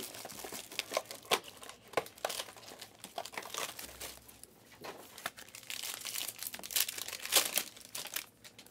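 Plastic wrapping on a Panini Prizm Choice trading-card box crinkling and crackling in a run of irregular snaps as it is handled and torn open, loudest near the end.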